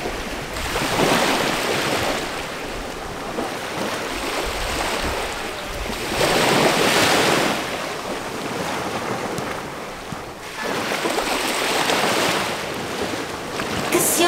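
Small waves breaking and washing up over a shallow, seaweed-covered shore, surging and receding in about four swells, the loudest about halfway through.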